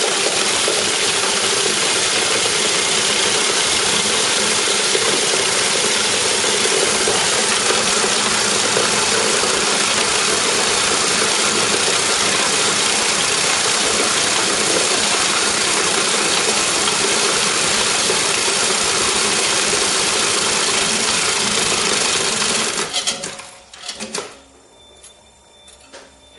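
Talaris (De La Rue) Mach 6 coin sorter running at full speed, a loud steady clatter of one-penny coins being fed through, counted and sorted into the pots. About 23 seconds in it stops by itself as the count of 709 coins completes, with a few clicks as it winds down.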